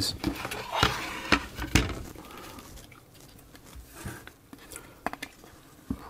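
Hard plastic clicks and knocks from handling a Sinclair ZX81's case halves and circuit board on a cutting mat. There are a few sharp taps in the first two seconds, a quieter stretch, and another cluster of clicks near the end.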